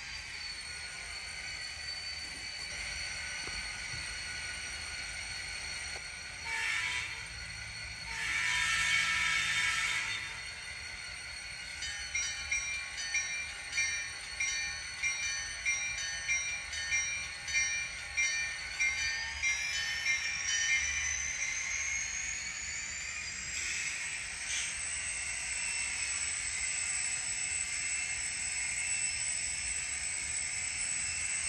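Digital sound decoders in N scale SD40T-2 diesel locomotive models playing their onboard sounds: the diesel engine runs with a steady high whine, a short horn blast and then a longer one sound, and the bell rings for about nine seconds. Near the end the engine revs up, its whine rising in pitch and then holding.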